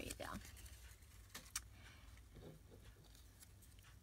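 Near silence: low room hum, with two faint light ticks about a second and a half in from small paper pieces being handled on a cutting mat.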